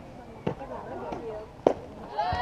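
Softball bat striking a pitched ball: one sharp crack near the end, over faint voices of people watching.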